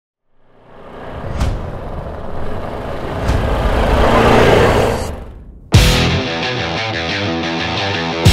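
A motorcycle engine builds up out of silence, swells and fades away. About three-quarters of the way through, a heavy rock band with electric guitars crashes in on a hard hit and plays a driving riff.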